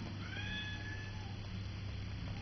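A cat meowing once, a call of about a second that rises a little in pitch as it starts, over a steady low hum.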